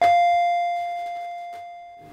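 A single bell-like chime note struck once and ringing out, fading slowly: the closing note of a bouncy, quick-noted comedy music cue.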